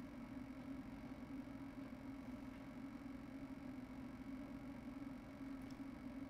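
Faint lecture-hall room tone: a steady low hum with a light hiss.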